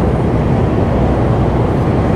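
Steady low rumble of a Mercedes-Benz heavy truck heard from inside its cab while cruising at motorway speed: engine drone mixed with tyre and road noise.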